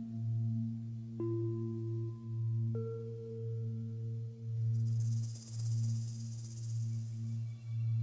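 Background music: a low drone that swells and fades about once a second, with single held notes coming in one after another about every second and a half, and a soft hiss swelling and fading for a couple of seconds after the middle.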